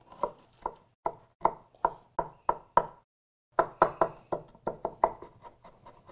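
Kitchen knife chopping an onion on a wooden cutting board: a run of sharp knocks, about two or three a second, with a short pause about halfway through.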